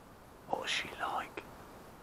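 A brief whispered or breathy utterance, under a second long, starting about half a second in, followed by a small sharp click.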